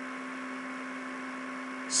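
Steady electrical hum with a constant hiss, the background noise of a home voice recording, with a low tone and several fainter higher tones held unchanging.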